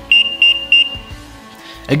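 ZKTeco SpeedFace-V5L terminal sounding its alarm: three short high-pitched beeps in quick succession, about three a second, the last trailing off briefly. It is the warning given when a person without a mask is detected.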